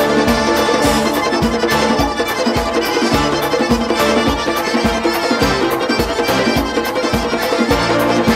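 Georgian folk dance music: an accordion plays the melody over a steady, fast drum beat.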